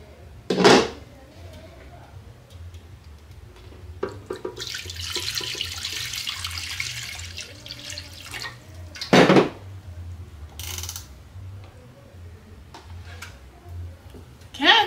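Water poured from a plastic pitcher into an empty cooking pot: a steady splashing for about three seconds in the middle. A knock comes shortly before it and a louder knock just after, as the glass pot lid and then the pitcher are set down on the stone counter.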